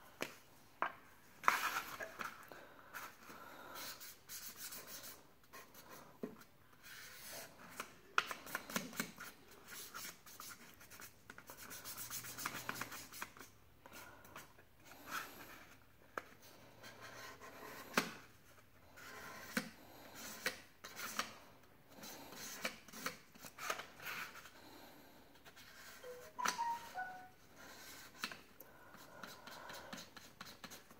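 Felt-tip marker rubbing and scratching across a paper plate as stripes are coloured in, in short, irregular strokes.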